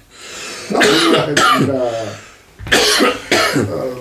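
A man coughing and laughing in two loud bursts, one about a second in and another near three seconds, as a laughing fit trails off.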